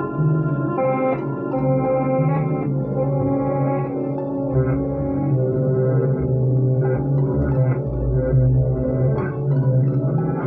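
Warr guitar, a tapped touch-style string instrument, played through effects in a free improvisation: held organ-like chords over a low bass note, with upper notes changing every second or so.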